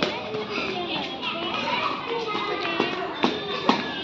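Children shouting and cheering during a hopping race, with a few sharp knocks in the second half as plastic bottles are set down on the paved ground.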